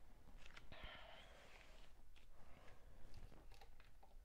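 Very quiet: a few faint taps and a brief soft rustle about a second in, from the recording phone being handled.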